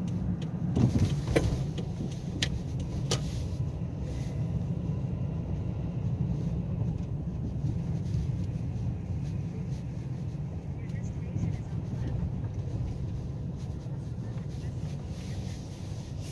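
Car cabin noise while driving at low speed: a steady low rumble of engine and tyres heard from inside the car, with a few sharp clicks in the first three seconds.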